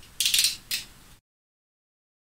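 Plastic cap of a small cosmetic tube being twisted open: two short rasping, ratchet-like clicks, the second briefer. The sound cuts off dead after about a second.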